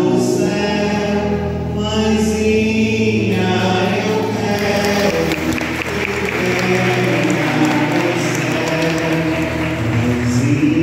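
A congregation singing a hymn together, with applause joining in about halfway through.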